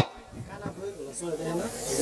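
Faint speaking voices over a hiss, both slowly growing louder toward the end.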